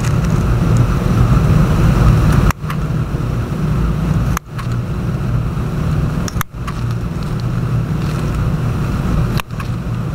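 Loud, steady low hum with a rushing noise over it, like a fan or motor, cutting out abruptly and briefly four times.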